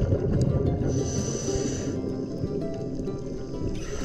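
Background music with held notes that change in steps.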